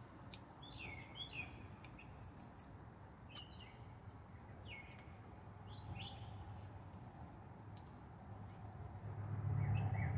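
Faint, scattered bird chirps, short falling notes every second or so, over a low steady hum that grows louder near the end.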